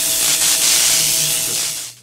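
Logo-intro sound effect: a loud, steady hiss with a faint steady tone underneath, fading out near the end.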